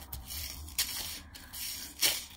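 Handling noise as metal necklace chains are moved and slid over a laminated surface: soft rustling and rubbing with a sharp tick about three-quarters of a second in.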